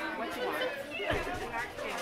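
Indistinct chatter of several shoppers talking at once, with a dull low thump about a second in.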